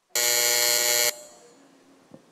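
An electronic buzzer sounds one steady tone for about a second, then cuts off with a short room echo. It signals the end of a minute of silence.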